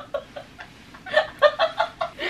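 Helpless, hard laughter: a quieter stretch with only faint breaths, then, about a second in, a run of about six short, quick laugh bursts.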